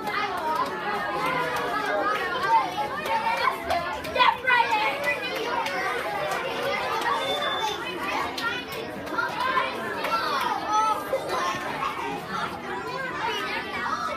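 Crowd of children and adults chattering at once, a steady hubbub of overlapping voices with no single speaker standing out.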